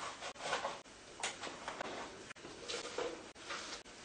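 Table knife sawing through buttered bread on a plate: several short rasping scrapes.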